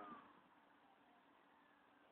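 Near silence: faint outdoor background, after a voice trails off at the very start.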